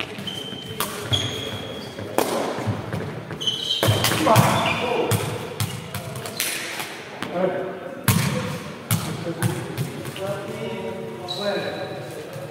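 Sepak takraw ball kicked back and forth in a rally, a series of sharp separate kicks and bounces echoing in a large sports hall, with players' shouts in between.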